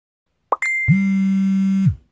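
Facebook Messenger notification sound effect: a quick rising pop about half a second in, a short high ding, then a low buzz lasting about a second that stops just before the end.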